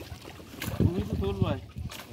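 Fishermen hauling a wet nylon net hand over hand over a wooden boat's side, with water splashing as netted fish thrash at the surface. A man's voice is heard in the middle, over a low rumble of wind on the microphone.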